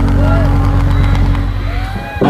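Live rock band playing through a large PA, caught in a break in the song: a low bass-synth note is held over deep bass, with a couple of short voices swooping over it, and the level dips slightly near the end.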